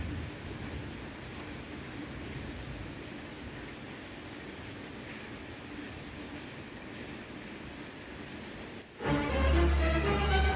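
Steady hiss of heavy rain. About nine seconds in, background music with a strong bass starts suddenly.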